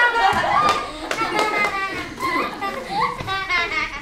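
Many children's voices overlapping at once as a class reacts together, loudest at first and dying down toward the end.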